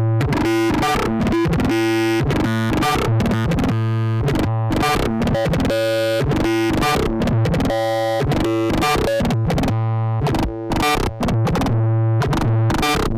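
Gotharman's anAmoNo X synthesizer playing a ring-modulated patch of five oscillators: a steady low drone with a dense, irregular stream of short noisy hits over it. Its tone shifts as the patch is tweaked.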